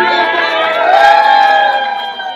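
A crowd of party guests cheering together, several voices holding one long cheer that lifts in pitch about halfway and then fades, with hand clapping.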